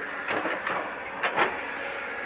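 A steady, low mechanical hum of an engine running at a distance, under outdoor background noise.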